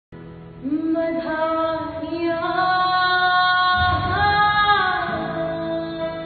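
A woman singing a Punjabi folk song in long, drawn-out notes, accompanied by an acoustic guitar. The voice comes in about half a second in and rises to a higher held note about two thirds of the way through.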